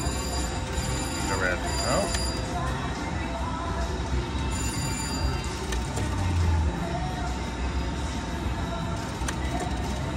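Video slot machine spinning its reels, with electronic chimes and steady tones, over the constant din of a busy casino floor.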